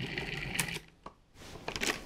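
Food processor motor running as it kneads a shaggy flatbread dough, switched off a little under a second in. A few short plastic clicks follow as the lid is turned and lifted off.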